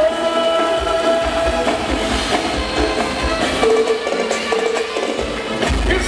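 Live arrocha band playing an instrumental passage: held keyboard-like notes over a drum beat. The bass and kick drop away for about a second and a half late on, then come back in strongly just before the end.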